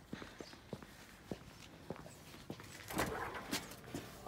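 Footsteps on stone paving slabs, a series of sharp steps about half a second apart, with a louder rustling burst about three seconds in.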